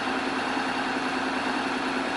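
Honda X-ADV's 745 cc parallel-twin engine idling steadily.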